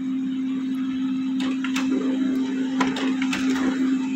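Canon LBP215X laser printer running a print job. Its motor starts up with a steady hum, with scattered light clicks from the paper feed as a sheet is drawn through and sent out to the output tray.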